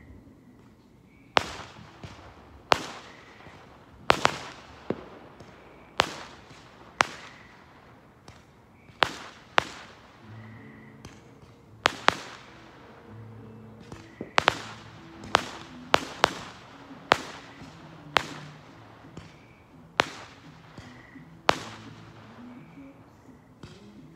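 Fireworks going off: a string of sharp bangs at irregular spacing, roughly one a second, each trailing off briefly.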